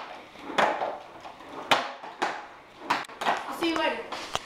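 Skateboard on a concrete garage floor: several sharp clacks of the board striking the concrete, roughly half a second to a second apart, with the rumble of its wheels rolling in between.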